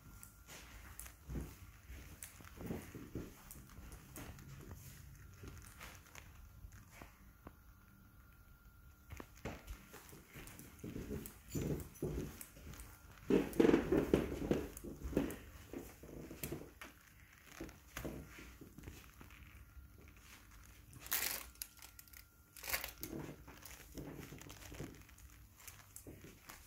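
Irregular rustling and soft knocks of a handheld phone camera being carried by someone walking on carpet, with light footsteps; the rustling is loudest for a couple of seconds about halfway through, and a faint steady hum sits underneath.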